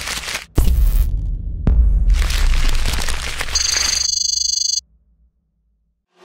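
Logo-animation sound effects: noisy crashing and crackling hits over a deep low rumble, with sudden cut-outs and a sharp hit. About three and a half seconds in, a pulsing electronic buzz joins and then everything cuts off abruptly.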